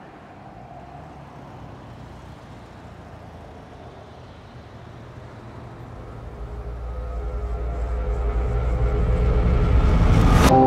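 Low rumbling drone of a sound-design riser, faint at first and swelling steadily louder through the second half.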